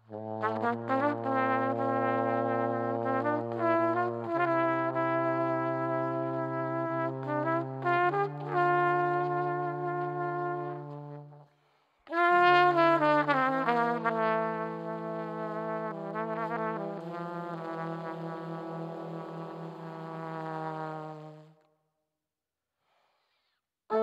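A trumpet and a trombone play together in two phrases of long held notes, the trombone on the low notes beneath the trumpet, with a short break about halfway. Late in the second phrase the low note pulses before both stop just before the end.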